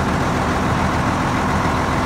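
Diesel farm machinery engine running steadily at harvest, a constant low drone with a held tone through it.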